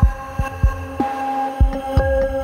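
Heartbeat sound effect, deep thumps in close pairs like a pulse, over sustained synthesizer tones in a short intro sting.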